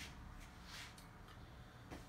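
Near silence: room tone with a faint low hum and a couple of brief, soft hisses.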